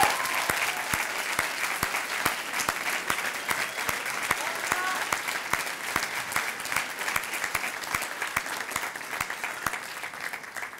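Audience applauding, a dense patter of many hands clapping that gradually eases off toward the end.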